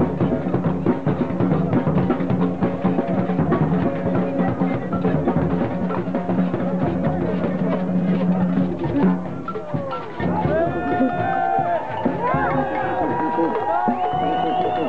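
Drum circle: several drums beaten together in a fast, dense rhythm over a steady low drone. About ten seconds in the drumming thins and voices calling out with rising and falling pitch come up over it.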